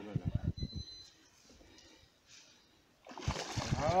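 A hooked carp thrashing and splashing at the surface close to the bank, starting suddenly about three seconds in. The angler takes it for a ghost carp. A man's exclamation comes in at the end.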